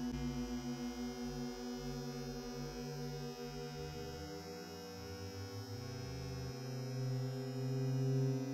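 Background music: a low sustained droning pad whose notes shift a couple of times, about halfway through and again near the end.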